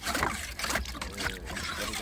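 Water sloshing and gurgling in an old artesian well's steel casing as a wooden pole is worked up and down inside it, with irregular wet splashes and knocks.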